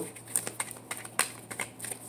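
Tarot cards being shuffled by hand: a run of sharp, irregular card clicks and snaps.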